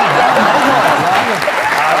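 Studio audience applauding, with a man's voice heard over the clapping.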